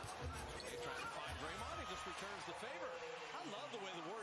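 Faint game sound from a basketball broadcast: a basketball bouncing on the hardwood court, with many short rising-and-falling squeaks of sneakers on the floor from about a second and a half in.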